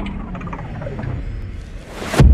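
Logo-reveal sound effects: a low rumble with a few last mechanical clicks, then a hiss that builds into a sharp swoosh near the end.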